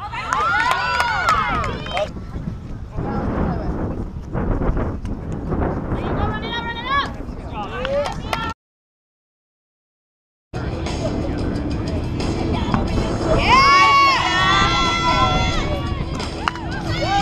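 Women players shouting and calling out across the field during a live kickball play, over a low rumbling background; the sound cuts out completely for about two seconds just past the middle, and the loudest, longest shouts come near the end.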